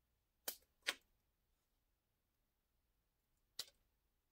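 Near silence broken by three short, sharp clicks, two close together about half a second in and one near the end. These are the small plastic-and-metal clicks of Kato Unitrack rail joiners being worked off a track section by hand.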